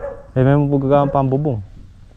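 A man's voice talking briefly, a short run of syllables that trails off after about a second and a half.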